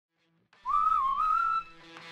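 Logo sting music: after about half a second of silence, a whistle-like tone wavers and rises slightly for about a second over soft held musical notes, then fades.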